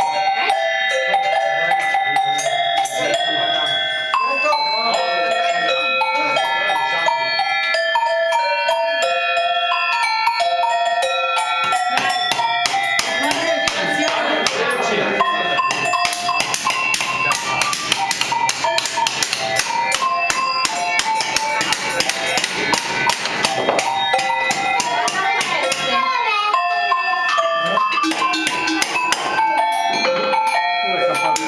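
A melody played on a set of tuned cowbells of graded sizes, ringing notes changing pitch one after another. From about twelve seconds in to about twenty-six the strikes come much faster and denser.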